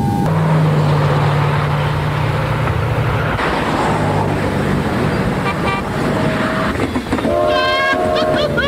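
A long, steady, low horn tone over street traffic noise, breaking off briefly about three and a half seconds in and then resuming; a higher, wavering tone comes in near the end.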